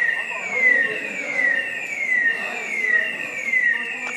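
An electronic siren or alarm sounding a high, repeated falling sweep, about six sweeps in four seconds at an even pace and a steady level.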